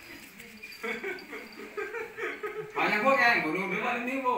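People talking, with a louder burst of voices and laughter near the end.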